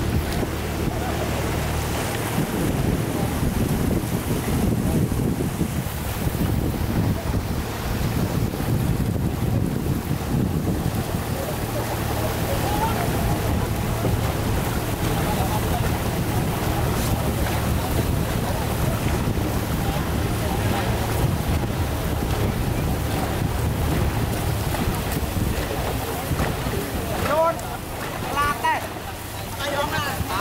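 Steady wind buffeting the microphone over rushing water, recorded from a boat moving on a river. A few voices call out in the last few seconds.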